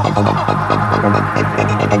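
Electronic rave music with a steady bass hum under fast, repeating synth notes and short falling pitch sweeps.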